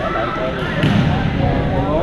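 Echoing hubbub of many players talking and calling across a sports hall, with a sharp crack of a badminton racket striking a shuttlecock a little before a second in.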